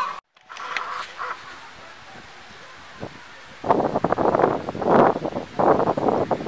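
Fowl clucking and calling in a dense run of short calls that starts a little past halfway through, after a quieter stretch.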